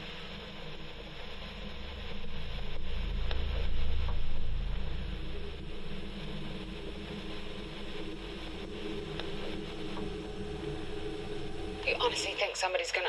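Microcassette recorder playing back tape with no voice on it: steady tape hiss over a low rumble that swells a few seconds in and then settles.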